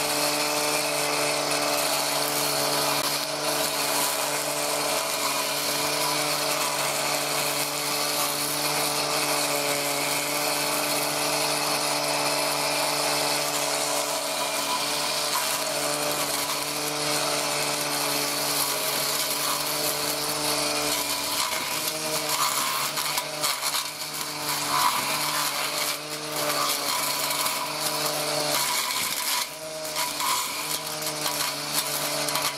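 Angle grinder converted into a grass cutter, running with a metal blade and cutting through weeds and grass: a steady motor whine with the hiss of the cutting. From about two-thirds of the way through, the motor note wavers and dips under load as the blade is worked into thicker growth.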